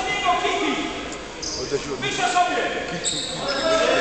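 A basketball bouncing on a hardwood court in a large, echoing sports hall, with voices in the background.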